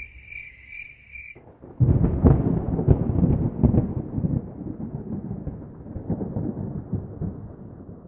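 A long rolling rumble of thunder with many sharp crackles starts suddenly about two seconds in and slowly fades away. Before it there is a high, steady chirring.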